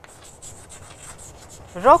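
Chalk scratching on a chalkboard as a word is written in cursive, a quick run of faint strokes. A woman's voice starts just before the end.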